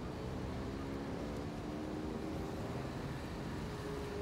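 A motor vehicle's engine running steadily: a low hum with a few steady tones that drift slightly in pitch.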